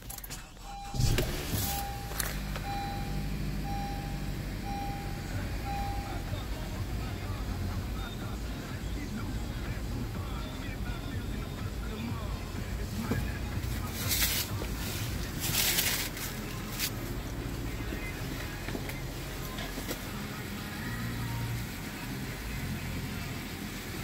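2015 Honda CR-V's 2.4-litre four-cylinder engine starting about a second in and then idling steadily, heard from inside the cabin. A chime beeps evenly, about once a second, for the first six seconds. Two brief rushing noises come about two-thirds of the way through.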